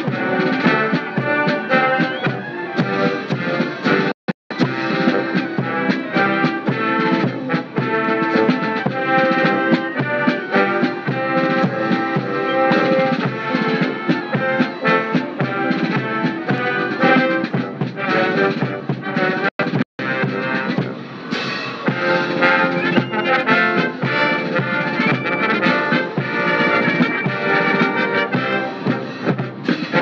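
Military brass band playing a march. The sound cuts out completely twice for a split second, about four seconds in and just under twenty seconds in.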